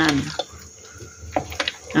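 Plastic spatula stirring thick, wet batter in a stainless steel bowl, with a few short scrapes and knocks against the bowl's side.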